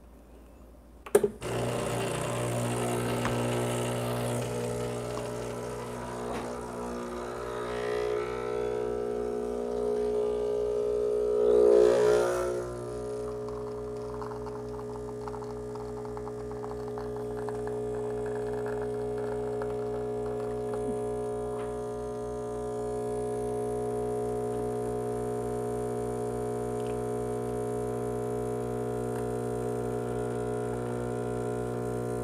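Breville Barista Express's vibratory pump starting with a click about a second in, then running with a steady buzzing drone as it pushes water through the puck to pull an espresso shot, briefly louder around twelve seconds in.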